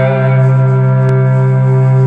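Amplified Les Paul-style electric guitar: a chord held and ringing out steadily.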